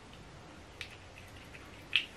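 Quiet room tone with a few faint small clicks from a tiny glass perfume sample vial being handled and dabbed, the loudest click right at the end.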